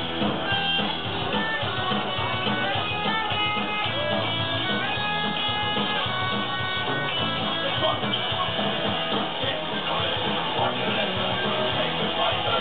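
Live punk rock band playing loudly: electric guitars over bass and drums, with a picked guitar melody line stepping through notes in the middle of the passage.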